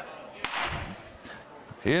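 A single sharp crack of the auctioneer's hammer striking the rostrum about half a second in, knocking down the sale. Faint room noise follows.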